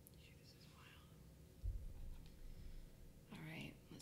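Faint speech from a man, with one dull low thump a little under two seconds in. Clearer speech starts near the end.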